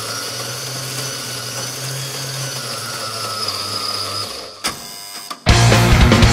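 The opening of a punk hardcore track: a steady buzzing drone with held tones, then a sharp click and a short quieter stretch. Near the end the full band crashes in loud with distorted guitars and drums.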